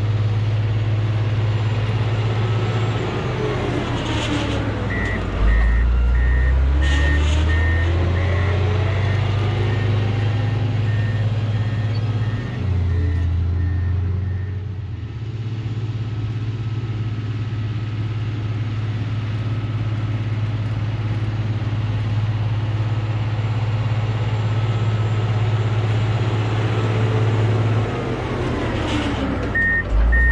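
Komatsu GD655 motor grader's diesel engine running steadily under working load, its note shifting lower a few seconds in and again near the middle. Its reversing alarm beeps evenly for about ten seconds from around five seconds in and starts again at the very end.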